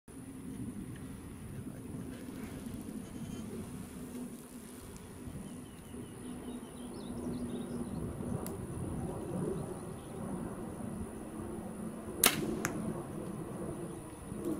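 Compound bow, a Hoyt Carbon Defiant, shot once near the end: a sharp crack of the string on release, then, about half a second later, a fainter smack of the arrow striking downrange.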